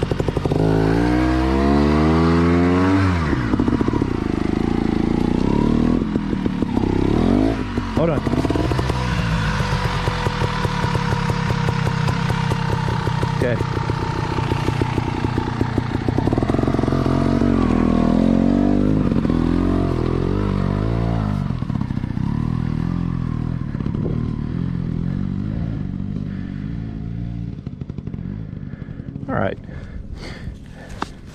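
Dirt bike engine revving up and down again and again as the rear tyre, packed with mud, spins for grip on a slick slope. The engine dies down over the last few seconds.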